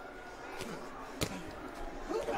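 A boxing glove landing a punch: one sharp smack a little over a second in, with a fainter knock just before it, over the quiet hum of an empty arena.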